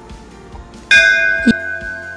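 Background music: a bell-like chime struck about a second in, ringing on and slowly fading, with a short knock just after.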